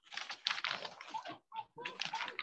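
Rapid clicking of a computer keyboard being typed on, heard through a video-call microphone, with a short break a little past halfway.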